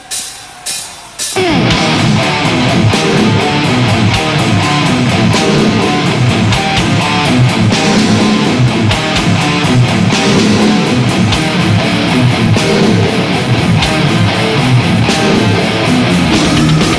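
Death metal band playing live: a few sharp hits, then distorted electric guitars, bass and fast drums come in together about a second in and keep up a dense, loud wall of sound.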